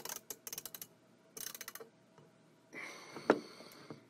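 Ratcheting screwdriver clicking in quick runs as a screw is driven into a plastic door-handle mounting plate. Near the end comes a short rustle and one sharp knock, the loudest sound.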